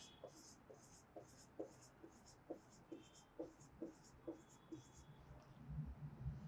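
Felt-tip marker writing on a whiteboard: a faint run of about a dozen short, scratchy strokes, roughly two a second, as a long row of zeros is written out.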